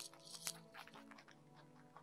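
A rabbit chewing close to the microphone: a quick run of crisp, crackly bites in the first second, the loudest about half a second in, then quieter, over soft background music.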